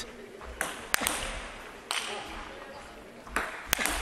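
Table tennis ball struck by bats and bouncing on the table during a rally: several sharp, unevenly spaced clicks, with two in quick succession near the end, over low hall noise.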